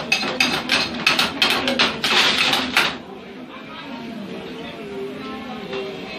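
A spoon clinking and scraping in a cooking pot on the stove: a quick run of sharp clinks over the first three seconds, ending in a denser scrape, then quieter with faint voices.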